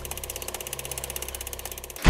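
Film projector running: a rapid, even mechanical clatter over a steady low hum.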